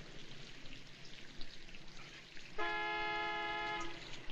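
Low street background noise, then a car horn sounds one steady blast of a little over a second, starting about two and a half seconds in.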